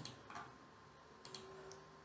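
Near silence: room tone with two faint computer-mouse clicks.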